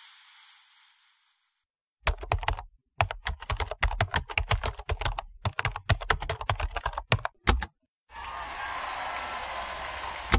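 The music's last note fades out within the first second. After a brief silence, a rapid, irregular run of sharp clicks and taps goes on for about five and a half seconds, followed by a steady hiss for the last two seconds.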